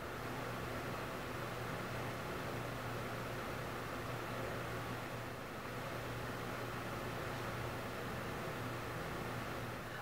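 Steady room tone: an even hiss with a faint low hum underneath.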